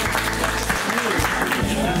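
A small group of people clapping in applause, with background music starting up under it.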